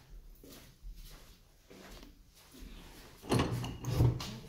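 Soft footsteps on a laminate floor, then a louder clatter near the end as an interior door is pushed open.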